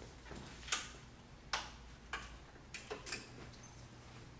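Footsteps of hard-soled shoes on a hard classroom floor: about six short sharp clicks, unevenly spaced, over a faint low room hum.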